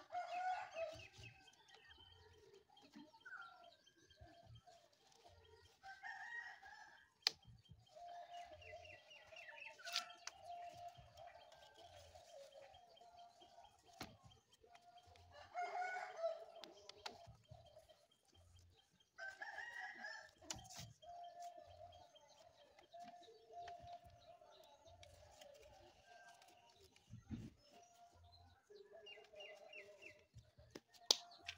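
Faint rooster crowing and chicken clucking, repeated calls recurring every few seconds, with a few sharp knocks in between.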